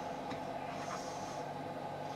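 Steady background machine hum, with faint soft scrapes and light taps of a knife slicing mango on a ceramic plate.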